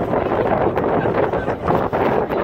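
Wind buffeting the microphone of a phone filming from a moving vehicle: a loud, unbroken rush.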